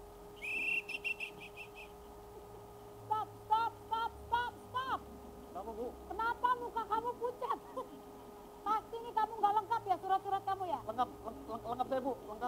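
A police whistle blown once about half a second in, a held high trilling note lasting about a second and a half. It is followed by a string of short high-pitched chirps that rise and fall in pitch, over a faint steady hum.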